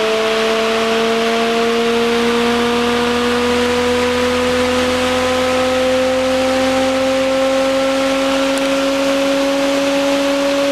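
Bedini-Cole window motor running with a steady multi-tone whine that rises slowly in pitch as it speeds up a heavy 35-to-40-pound wheel.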